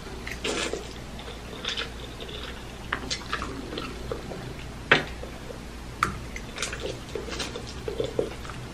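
A person eating spicy instant noodles close to the microphone, with wet slurping, chewing and lip-smacking sounds. There is a scatter of short mouth clicks, and the sharpest smacks come about five and six seconds in.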